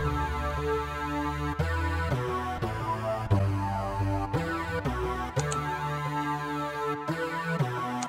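A looping synth bass melody, a horror-style bass sequence, playing back in the MPC software. About five seconds in, its deepest low end drops away as a low-cut EQ filter is swept up to about 97 Hz.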